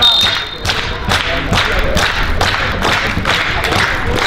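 A short, sharp referee's whistle at the start, then supporters in the stand keeping up a steady rhythm of beats, about four a second.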